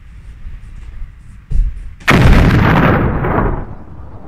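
A dull thump about a second and a half in, then a sudden loud boom like an explosion sound effect, dying away over about a second and a half.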